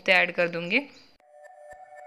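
A woman's voice speaking for under a second, then a steady electronic background-music note held with faint ticks, starting about a second in.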